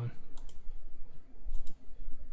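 Computer mouse clicking: two quick clicks about half a second in and another pair about 1.6 s in.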